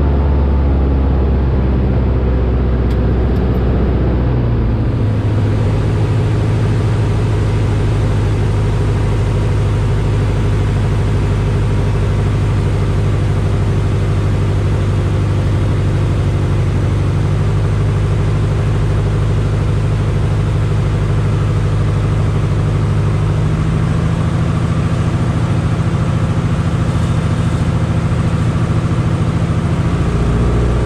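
Light single-engine airplane's piston engine and propeller droning steadily, heard from inside the cockpit. The engine note shifts about four seconds in and again a little past the twenty-three-second mark.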